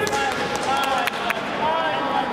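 Raised voices calling out during a kickboxing bout, with about three sharp smacks of gloved punches landing in quick succession a little under a second in.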